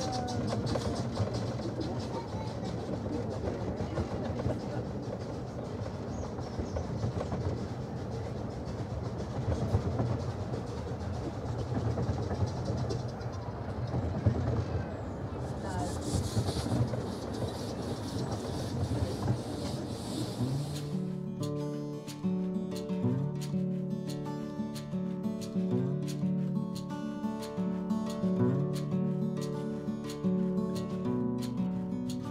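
Ride on a narrow-gauge steam railway: a steady low rumble of the running train, with a short burst of hissing about halfway through. About two-thirds of the way in, this gives way abruptly to acoustic guitar music.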